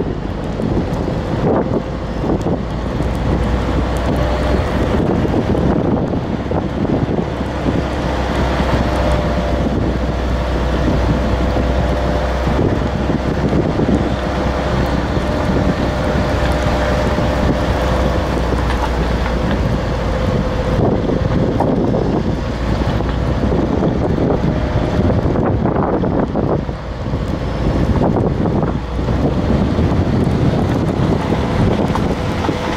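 A car driving along a wet asphalt country road, heard from inside the cabin: a steady low rumble of engine and tyres under an even road hiss.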